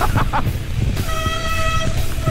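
Mountain-bike disc brakes squealing: a steady high-pitched squeal held for about a second, then again briefly near the end, typical of wet brakes. Under it runs a constant rumble of tyres on the trail.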